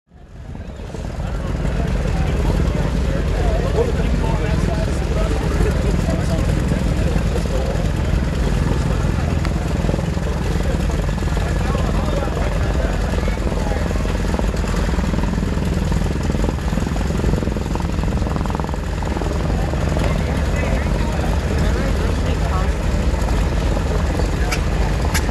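A large engine running steadily with a deep, even rumble, fading up over the first two seconds.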